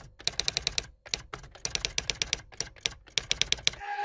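Typewriter sound effect: quick runs of sharp key-strike clicks with short pauses between runs.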